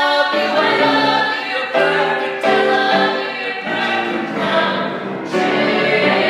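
A group of voices singing a musical-theatre number with accompaniment. The sound changes abruptly about two and a half seconds in and again near the end, like edit cuts.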